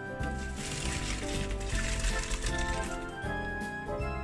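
Background music plays throughout. From about half a second in, a rush of splashing water lasts about two seconds as hot pasta water is poured from a pot into a plastic colander in a steel sink.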